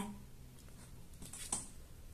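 A woman's voice giving a single short syllable right at the start, then a quiet room with a faint breathy rustle about one and a half seconds in.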